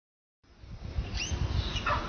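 Baby macaque giving two short, high-pitched cries about a second in and near the end, over low wind or handling rumble. The sound begins only after a brief silent gap.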